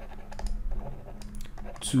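Quick, irregular light clicks and taps of a stylus writing on a graphics tablet, over a low steady hum.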